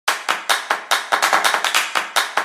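Electronic intro music opening with a run of sharp clap-like percussion hits, about five a second, quickening to about ten a second after the first second as a build-up.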